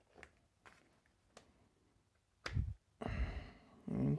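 Handling sounds of a cordless impact wrench's metal gearbox housing and motor being fitted into its plastic housing half: a few faint clicks, then a soft knock and a louder scraping rustle in the last second and a half.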